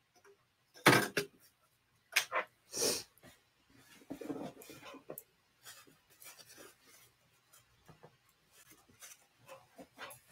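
Handling noises at a work table: short sharp knocks about one, two and three seconds in, a brief spell of softer rubbing and shuffling around the fourth second, then only faint ticks.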